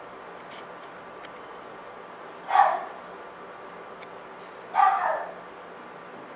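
A dog barking twice, about two seconds apart, each bark short.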